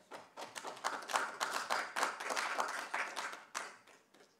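Applause: a group of people clapping, which dies away near the end.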